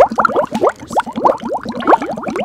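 Rapid bubbling sound: a quick run of short plops, each rising in pitch, about eight a second.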